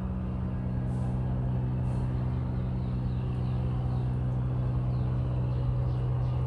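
Electric stand fan running with a steady low hum.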